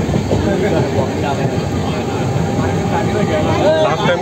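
Steady rumble of a moving train, heard from inside a carriage, with several people talking over it.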